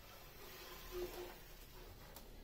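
Quiet, with faint handling of a plastic building-brick toy as a knob on its launch tower is unscrewed; a slightly louder soft sound comes about a second in.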